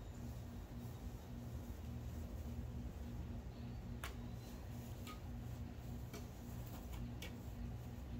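Badminton rackets hitting a shuttlecock during a rally: several short sharp ticks, the clearest about four seconds in, over a low steady background rumble.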